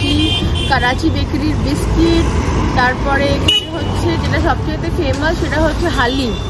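A woman talking, over the steady low rumble of street traffic.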